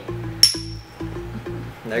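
Two small glass shot glasses clinked together once in a toast: a single sharp clink with a short, high ring that fades within half a second. Background music with a steady beat plays underneath.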